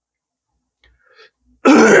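Mostly quiet, then near the end a man's short laugh.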